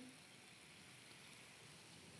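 Faint, steady sizzling from a hot nonstick cast iron skillet as cream is poured into the wine deglazing the pan.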